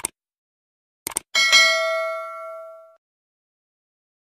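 Subscribe-button sound effect: short clicks, then, about a second in, a single notification-bell ding that rings and fades away over about a second and a half.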